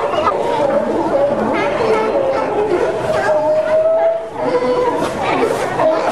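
A chorus of California sea lions barking and calling over one another, with one longer, held call about three seconds in.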